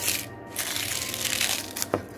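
A metal scraper prying a 3D-printed plastic disc off the printer bed: a crackling scrape that ends in a sharp snap as the part comes free near the end.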